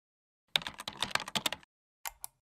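Computer keyboard typing sound effect: a quick run of sharp key clicks, starting about half a second in and stopping about a second later.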